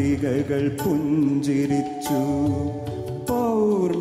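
A man singing a Malayalam film song into a microphone, holding long notes and gliding between them, with a falling glide near the end.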